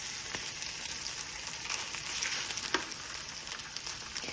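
Cornstarch-coated shaved ribeye sizzling steadily in hot oil in a nonstick skillet, with a few light clicks as metal tongs turn the pieces over.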